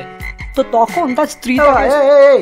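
Frog croaking, likely a cartoon sound effect: a run of short pitched croaks, then a longer, wavering croak near the end.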